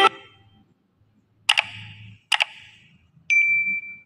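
Two sharp, bell-like ding sound effects a little under a second apart, each ringing away, followed by a short steady high beep that starts suddenly near the end.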